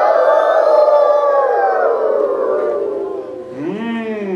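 A man imitating a wolf howling with his voice: one long howl that slowly falls in pitch and fades, then a shorter, lower rising-and-falling call near the end.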